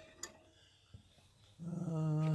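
Mostly quiet, with a faint click or two. Then, about three-quarters of the way in, a man's voice starts a drawn-out, level-pitched hum or held vowel without words.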